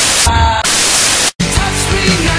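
Loud static hiss, like a detuned TV, broken by brief snatches of music. It cuts out suddenly for an instant about a second and a third in, then the hiss and music return.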